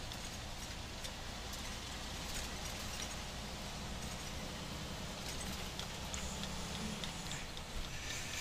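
Steady low engine hum and road noise heard inside the cab of a Volvo VNL 730 semi truck rolling along a highway ramp, with a few faint clicks.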